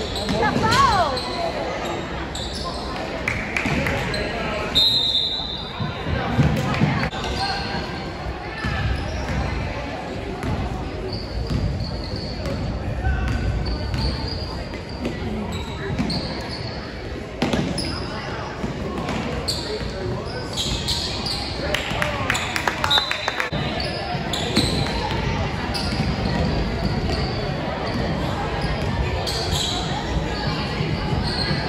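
Indoor basketball game: a ball bouncing repeatedly on the court and short high sneaker squeaks, over a constant murmur of players' and spectators' voices.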